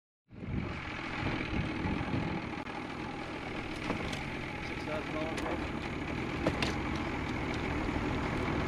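Small boat's outboard motor running steadily at low trolling speed while snagging, a continuous low rumble with a few sharp clicks in the middle.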